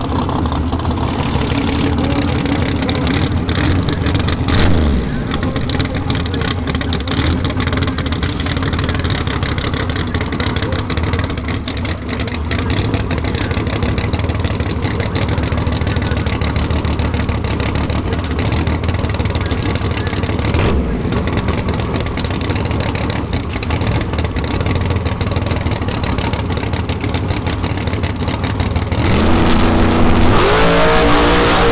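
Race-prepped drag car engine idling in the staging lanes, with a couple of short revs, then revving up sharply near the end as the car comes up to launch.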